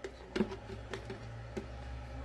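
Metal spoon scraping and tapping against a plastic tub as thick doce de leite is scooped into a plastic blender jar: four light knocks about half a second apart, over a steady low hum.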